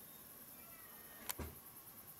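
Quiet night-time background with faint insect chirping, broken by one short sharp click a little over a second in.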